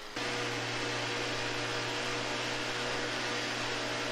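Small engine of a vibrating concrete screed running steadily, a constant hum under an even hiss.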